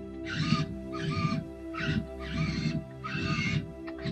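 Background music with steady sustained tones, overlaid by five short hissy sounds of about half a second each.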